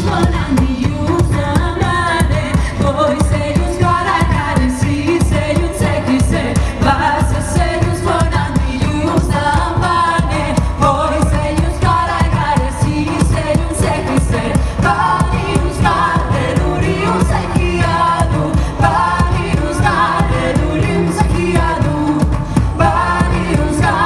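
Folk band playing live: a woman singing the lead over a steady drum beat and hurdy-gurdy, heard loud through the stage PA.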